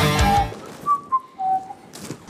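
Loud rock music with heavy guitar cuts off about half a second in. It is followed by three short whistled notes, each lower than the one before.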